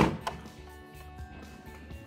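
Quiet background music plays under the scene. Near the start there are a short knock and a couple of small clicks as hands take hold of the robot mower's plastic body.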